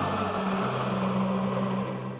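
Intro music: held low bass notes that step up in pitch about half a second in, over a steady noisy wash.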